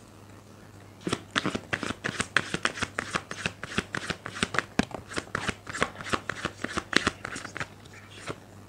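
A tarot deck being shuffled by hand: a quick run of card flicks, about five or six a second, starting about a second in and stopping near the end.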